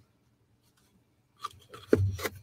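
Near silence, then about a second and a half in, brief scratchy rustling and a click as paper cups holding abrasive grit are handled and set together.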